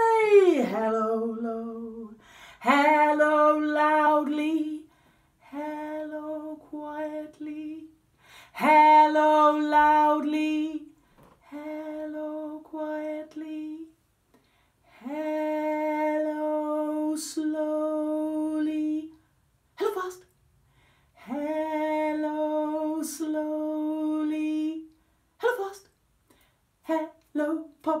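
A woman singing a children's hello song unaccompanied, in short sustained phrases with brief pauses between them. Right at the start her voice slides down from a high note to a low one.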